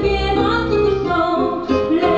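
A woman singing a song with instrumental accompaniment, holding long notes.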